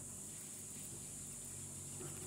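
Steady, high-pitched chirring of insects in the background, with no distinct cutting sounds.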